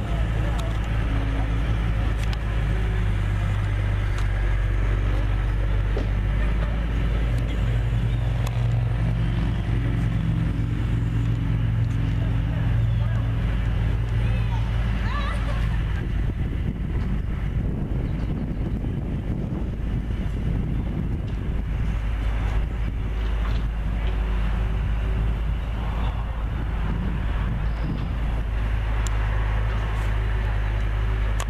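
A large engine idling steadily, a low even hum that weakens somewhat for a stretch past the middle and strengthens again near the end, with people talking in the background.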